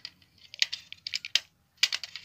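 Light plastic clicks and taps as a modular indicator light is pushed into the push-lock frame of a plastic modular switch plate: a quick run of small clicks with a brief pause partway.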